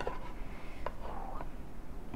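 A plastic spatula working through sauce in a stainless steel pan: soft wet scraping with one light click a little before the middle. Under it runs the steady low hum of a room air conditioner.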